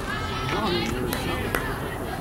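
Indistinct chatter and calls from softball players and spectators, with a couple of sharp knocks about a second and a half in.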